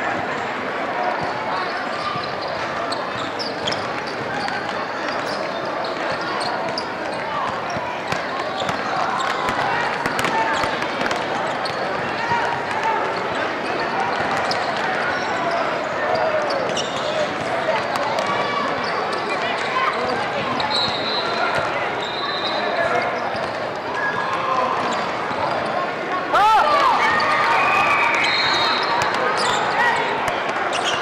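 A basketball bouncing on a court floor over steady chatter of many voices in a large hall. It gets louder near the end.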